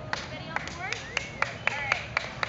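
Scattered hand clapping from a few people, sharp irregular claps about four a second, with short high-pitched voices gliding up and down over them.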